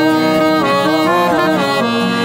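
Scandalli chromatic button accordion playing a reedy melody over held notes.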